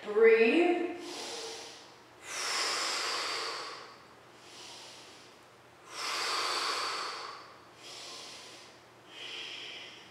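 A woman breathing heavily and audibly under the strain of holding a forearm-stand inversion: two long, loud breaths about three and a half seconds apart, with shorter, quieter breaths between them.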